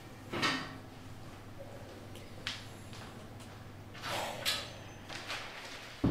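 A few faint clicks and a short scraping rustle about four seconds in, over a low steady hum: quiet office handling sounds such as a door or furniture being moved.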